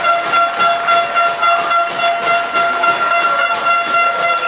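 A horn sounding one long, steady, unwavering note at a rugby ground, fading out just at the end.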